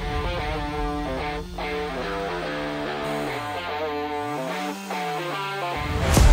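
Background music: plucked guitar-like notes over a low bass line that slides down and then arches back up in the second half.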